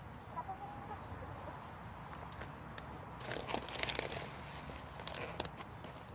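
Hens scratching and pecking at the ground close by: a short cluck near the start, then a cluster of quick taps and rustles about three to four seconds in and a few more near the end.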